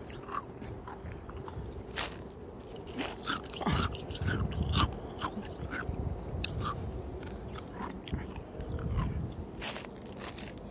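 A person chewing crunchy hospital ice with the mouth right at the microphone: a run of irregular sharp crunches, loudest in a cluster around the middle.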